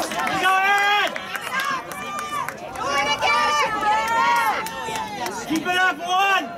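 Several voices shouting and calling out across an outdoor soccer field, long drawn-out calls overlapping one another.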